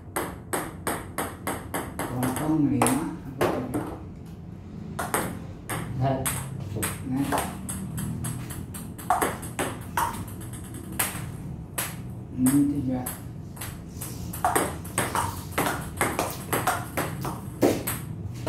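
Table tennis rally: the plastic ball clicking off the rubber paddles and bouncing on the table, a rapid run of sharp ticks in quick alternation with short breaks between exchanges.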